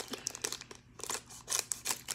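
Crinkling of a shiny candy wrapper being handled and opened, in short irregular crackles with a brief lull about a second in.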